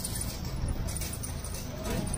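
Busy street ambience: indistinct voices of passersby over a steady low rumble of traffic.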